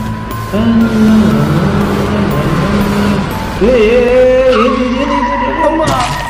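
Film sound of a car at speed at night: a low engine rumble under dramatic music, with tyres screeching in long wavering squeals from a little past halfway, ending in a sudden crash at the very end.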